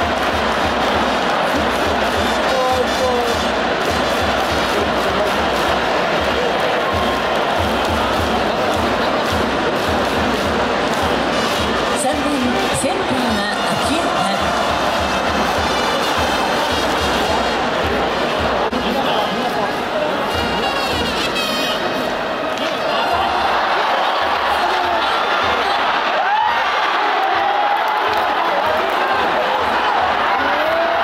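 Baseball stadium crowd cheering, with fans' chanting and music from the cheering section over a steady low beat.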